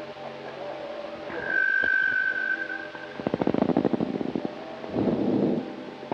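Electric guitar playing Azerbaijani-style music through effects: one long held high note, then fast repeated picked notes.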